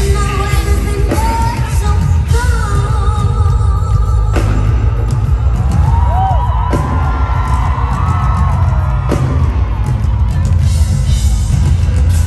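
Live band in an arena: a woman singing long held notes with vibrato over heavy bass, drums and keyboards, recorded loud and bass-heavy on a phone from the crowd.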